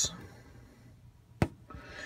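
Quiet small-room tone with a single sharp click about one and a half seconds in.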